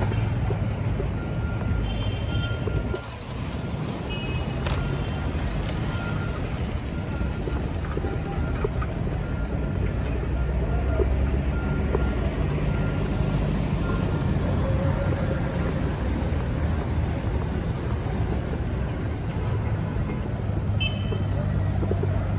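Steady road traffic and vehicle engines at a busy road interchange, a dense low rumble throughout. A faint beep repeats about once a second for most of the first two-thirds.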